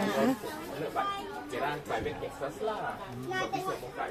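Several people chatting at once in a room: overlapping conversation with no single clear speaker.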